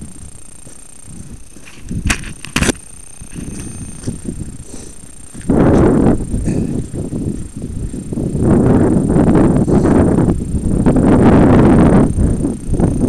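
Mitsubishi Pajero driving along a rough, rocky off-road track: low rumbling noise with two sharp knocks a couple of seconds in, then heavy irregular jolting and crunching from about halfway, easing briefly near the end.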